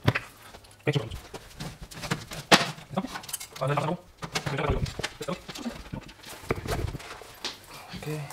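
Handling noise from a microphone and its stand being positioned: a string of sharp clicks and knocks with a couple of deep low thumps, plus a few brief vocal sounds.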